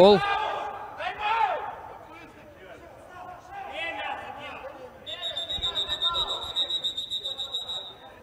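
Players shouting in a hall, loudest right at the start, with further shouts a second and about four seconds in. From about five seconds in comes a long, pulsing referee's whistle blast lasting nearly three seconds.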